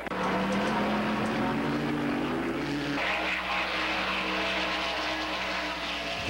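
Ford Mustang racing cars' V8 engines running at speed on a track, the engine note rising slightly over the first few seconds. About halfway through it cuts suddenly to a different, steadier engine note.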